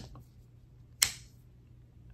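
Bone-handled Camillus electrician's pocket knife blade snapping shut under its spring: one crisp snap about a second in.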